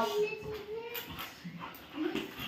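Labrador dog whining: one steady whine lasting about a second, while it tugs at a leash in play.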